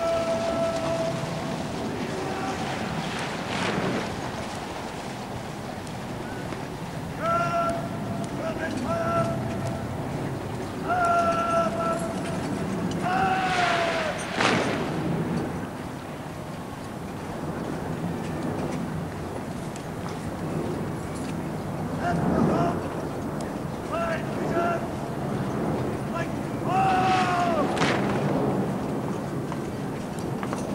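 Parade-ground words of command shouted by a drill officer, several long drawn-out high calls that each fall away at the end. A few of them are followed by the sharp crash of massed guardsmen's boots and rifles as the ranks carry out the drill movement together.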